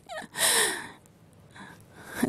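A woman's short, breathy exhale, about half a second long, just after the start.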